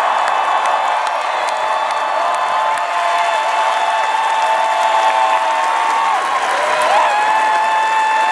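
A large crowd applauding and cheering, with held shouts and whoops rising above steady clapping.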